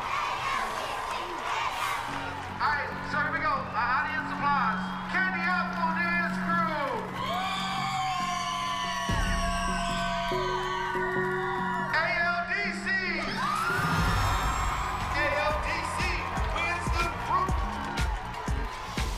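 Upbeat dance music with a crowd whooping, yelling and cheering over it.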